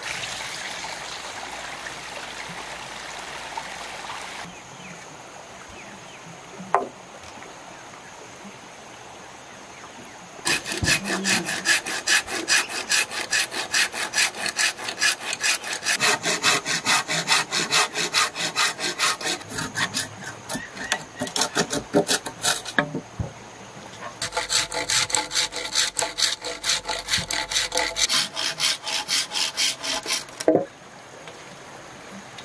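A hand saw cutting through a green bamboo pole in quick back-and-forth strokes, with a brief pause partway through the cut. It is preceded by a few seconds of a shallow stream trickling over rocks.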